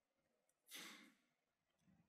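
Near silence, broken about two-thirds of a second in by one short audible breath from a man, under half a second long, picked up close on his headset microphone.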